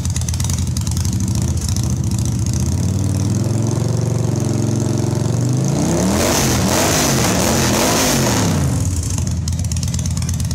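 Warm Victory V-twin motorcycle with a modified 116 cubic-inch engine and Conquest Customs exhaust pipes, idling. Its revs start climbing about three seconds in, then it is blipped through several quick revs, louder, before dropping back to idle near the end.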